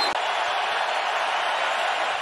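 Steady crowd noise from the spectators at a football stadium, an even hum of many voices with no single call standing out.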